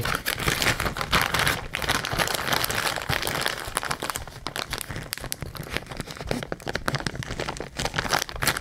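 Clear plastic zip-top bag crinkling as it is handled, a continuous rustling crackle of many small clicks.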